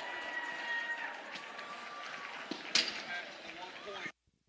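Quiet gymnasium crowd noise with faint voices, a faint tone fading out in the first second, and one sharp knock about three quarters of the way through.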